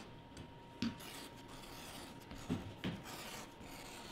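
Leather edge beveler shaving along the edge of a vegetable-tanned leather strap: faint scraping, with a few sharper strokes about a second in and again between two and a half and three seconds.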